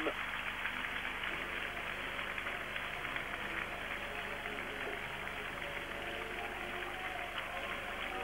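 Audience applauding steadily, a dense even clatter of many hands, with faint voices in the crowd.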